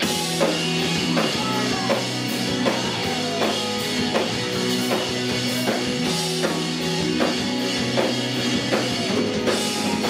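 Live emo rock band playing an instrumental passage: distorted electric guitars over a drum kit keeping a steady beat, with no vocals.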